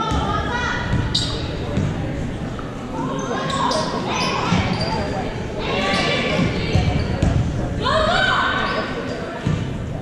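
A basketball bouncing on a hardwood gym floor during play, amid indistinct voices of players and spectators, echoing in a large gymnasium.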